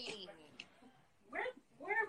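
A young child's two short, high-pitched shouts that rise and fall in pitch, a second and a half in and again near the end, in a string of shouted "No!" cries.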